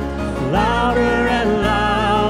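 Live worship band: a woman singing over acoustic and electric guitars with a steady bass underneath. Her voice comes in about half a second in.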